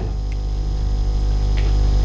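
A steady, low electrical mains hum with buzzing overtones in the sound system, with a couple of faint clicks.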